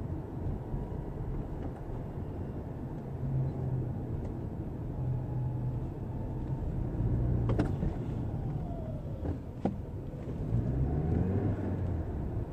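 Car engine and road noise heard from inside the cabin while driving, a steady low rumble. Two sharp clicks come a little past the middle, and the pitch rises near the end.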